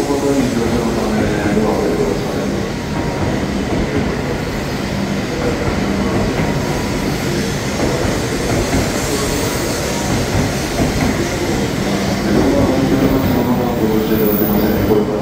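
E7 series Shinkansen train rolling slowly along the platform, a steady rumble of wheels and running gear with a low hum.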